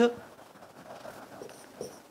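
Dry-erase marker squeaking and scratching on a whiteboard as words are written, a few short strokes in the second half.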